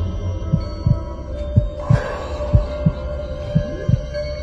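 Background music built on a low double pulse like a heartbeat, about once a second, over a steady held tone.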